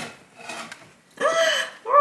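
Faint handling of a cardboard box as it is opened, then, about a second in, a woman's short, high-pitched excited exclamation without words, on seeing what is inside.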